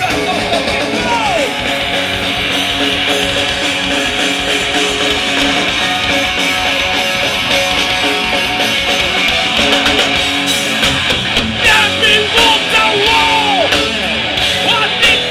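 Rock band playing live: electric guitar, bass guitar and drums, loud and continuous, with the drum hits standing out more in the second half.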